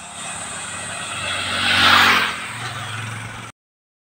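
Motorbike ridden along a paved road: a low engine hum with tyre and wind noise, swelling to its loudest about two seconds in.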